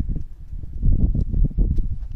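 Low, irregular rumble and thumps on a hand-held camera's microphone, as from wind buffeting and handling while the camera is moved.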